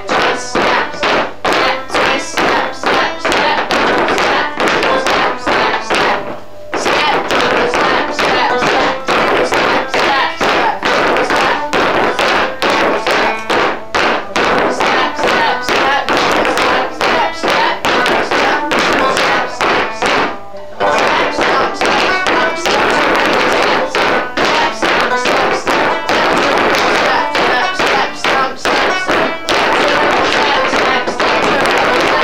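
Wooden-soled clogs rapping out fast heel-and-toe clog-dance steps on a wooden floor over a banjo tune. The taps and the banjo stop briefly twice, about six and a half and twenty seconds in.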